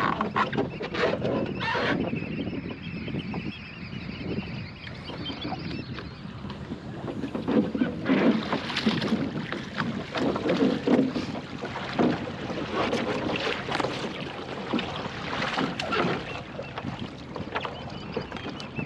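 Water splashing and sloshing as a swimmer hauls himself back aboard a capsized, swamped plywood sailing skiff, in uneven surges, the busiest in the second half.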